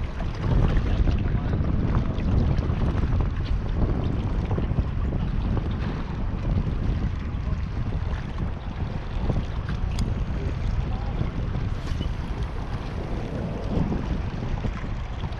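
Steady wind rumbling on the microphone, over the wash of the sea against the shoreline rocks.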